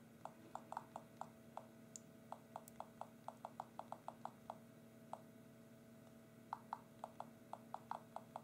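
HTC Titan's Windows Phone keyboard key-press sounds: a quick, irregular run of short, faint ticks as a message is thumb-typed, pausing for about two seconds past the middle before resuming.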